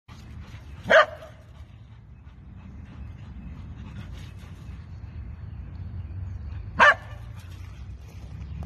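A dog barking twice during rough play with another dog: two short, sharp barks about six seconds apart, the first about a second in and the second near the end.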